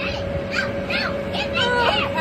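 High-pitched voices calling out, strongest in the second half, over a steady hum and rush from the bouncy house's inflation blower.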